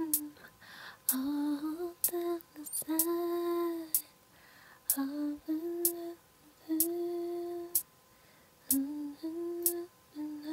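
A woman humming a slow R&B melody in short held phrases with pauses between them, and a sharp click keeping time about once a second.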